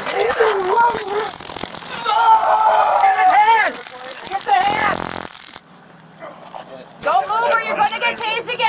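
A man screaming and crying out in pain from the taser hits, in long, high, wavering cries. A dense high crackling hiss runs beneath the cries and cuts off suddenly about five and a half seconds in. After a short lull, voices return near the end.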